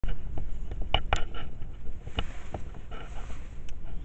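Handheld camera handling noise: several short clicks and knocks over a steady low rumble.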